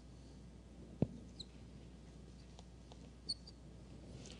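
Marker pen drawing on a whiteboard: a sharp tap about a second in, then brief high squeaks of the tip twice, over a low steady room hum.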